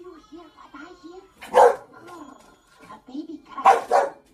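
English Bulldog barking twice, about a second and a half in and again near the end, over voices from a TV soundtrack.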